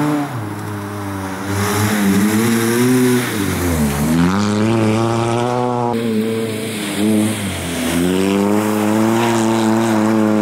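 Nissan Sunny rally car's four-cylinder engine revving hard under acceleration, its pitch dropping sharply about four seconds in and again a few seconds later as the driver lifts or changes gear, then climbing again.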